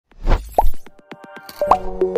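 Animated-logo intro sound effects: a whoosh and a short rising pop, a quick run of clicks, then a bright chord of synth tones near the end that is left ringing.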